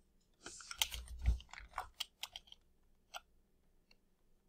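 Clicking and tapping at a computer while working in digital painting software: a quick flurry of clicks and key taps with a dull knock in the first two seconds, then a few single clicks.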